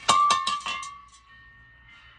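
A sudden burst of bright ringing strikes, like a chime or a clang, the loudest sound here, whose ring dies away within about a second, leaving faint steady high tones.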